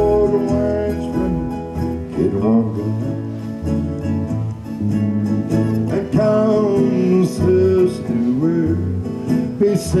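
Live old-time country band playing, with guitar and a stepping bass line under a melody that slides between notes.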